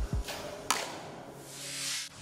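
A rising whoosh transition effect that swells over about a second and cuts off sharply, over a faint music bed. A couple of low thumps come at the very start and a sharp click comes a little before the whoosh builds.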